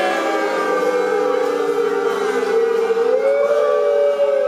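A group of men singing a football chant together, holding one long drawn-out note that rises in pitch about three seconds in.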